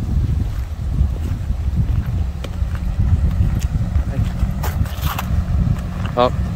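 Wind buffeting the camera microphone: a continuous, uneven low rumble, with a brief faint voice about five seconds in.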